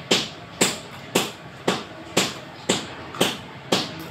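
Sharp strikes repeating very evenly, about two a second, each with a short ringing fade.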